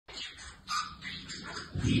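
Pet budgerigars chattering in a scratchy warble, with a louder short, word-like sound near the end.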